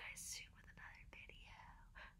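A woman whispering faintly, barely above near silence.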